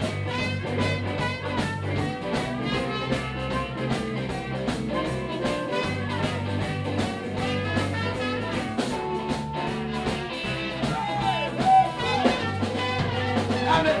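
Live blues band playing an instrumental passage: electric guitars over a drum kit with a steady beat.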